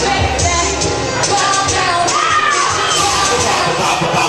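Loud music playing over an audience cheering and shouting.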